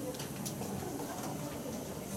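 Faint murmur of voices and stage noise in a small hall, with a few light clicks.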